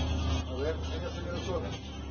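Indistinct voices of people talking at a short distance, over a steady low rumble.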